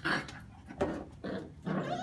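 Two small dogs play-fighting, a few short growls and scuffles.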